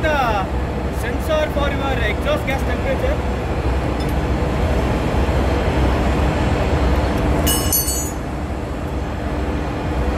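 Steady drone of running engine-room machinery, with a voice speaking through it in the first few seconds. About seven and a half seconds in, a short burst of metallic clinks as a spanner meets metal parts on the generator's cylinder head.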